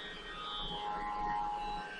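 Faint, steady musical drone of several held tones, swelling a little after about half a second.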